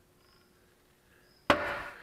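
Quiet at first, then a hinged honeycomb-panel seat plate is swung down shut onto the aluminium tube frame of an ultralight's seat: one sharp knock about one and a half seconds in, ringing out briefly.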